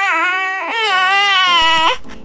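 A baby crying in two long, wavering cries, the second ending abruptly just before the end.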